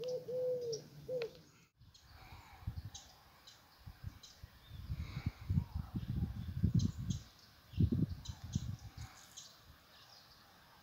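A dove cooing twice in the first second and a half, low and slightly falling. After a break, small birds chirp in short high notes over an irregular low rumble of wind on the microphone, loudest near the end.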